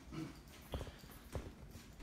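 A person's footsteps: three fairly faint steps about half a second apart.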